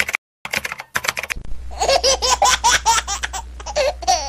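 Rapid keyboard-typing clicks for about the first second, a typing sound effect as the on-screen caption appears letter by letter. From about two seconds in, high-pitched laughing follows.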